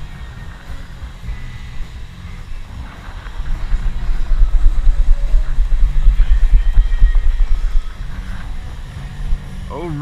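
Long-handled metal-detecting sand scoop digging into beach sand and being worked to sift it, heard mostly as a heavy low rumble with knocks for a few seconds in the middle. A man speaks briefly at the very end.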